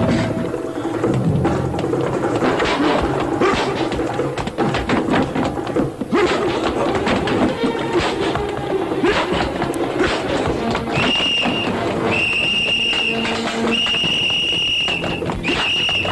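Film fight soundtrack: dramatic music over the thuds and smacks of punches and scuffling, then a shrill whistle blown in four long blasts in the last five seconds.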